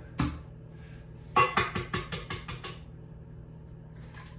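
A single knock, then a quick, even run of about nine sharp metallic clinks, loudest at first: a utensil tapping against a stainless steel mixing bowl as eggs go into the batter.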